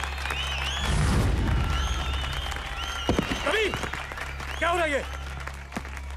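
A crowd cheering and shouting over a low sustained music drone, with a burst of crowd noise about a second in and a couple of loud falling-pitch cries later on.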